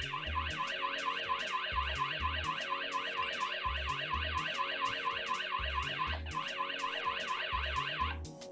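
Aqara M2 hub's built-in alarm siren sounding after the security system is triggered: a high, fast warble sweeping up and down about four to five times a second, with a brief break about three-quarters of the way through, then cutting off suddenly. Background music with a steady low beat plays underneath.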